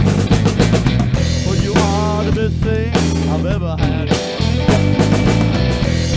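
A small live band jamming: an electric guitar lead with notes bending up and down several times, over a drum kit keeping a steady beat and a low bass line.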